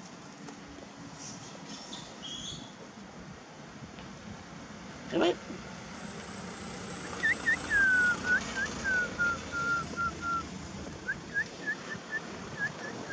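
A run of short, clear whistled notes, each sliding down in pitch, that starts about seven seconds in, pauses, then starts again near the end, after a single brief sharp sound about five seconds in.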